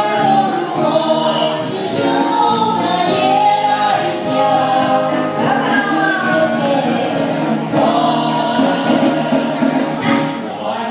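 A song performed live: several voices singing together through microphones over a band with keyboard and drums keeping a steady beat.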